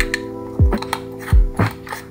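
Light clicking and ticking as a small clear acrylic screw-top case is handled and turned, over background music with held chords and a soft kick-drum beat.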